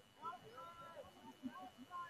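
Faint, distant shouts and calls of players and spectators at an outdoor lacrosse game.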